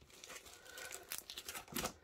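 Faint crinkling and rustling of clear plastic packaging as a stencil in its plastic sleeve is handled, with a few light ticks.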